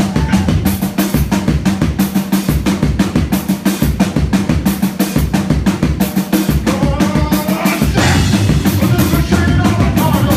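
Live heavy rock band playing loud, led by a drum kit with dense, regular hits under bass and guitar. The sound fills out and grows steadier about eight seconds in.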